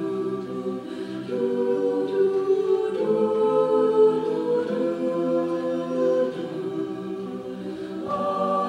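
Mixed male and female a cappella group singing sustained chords, unaccompanied, the harmony shifting every second or so.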